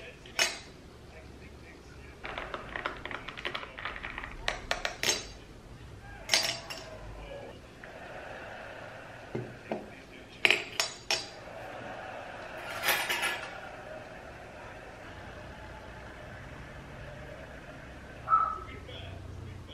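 Metal spoons and cutlery clinking against a saucer and dishes on a table, in scattered sharp clinks with a quick run of small clicks about two seconds in and a cluster of louder clinks around ten to eleven seconds.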